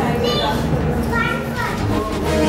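Young children's high-pitched voices calling out and chattering: one high call near the start and more from about a second in.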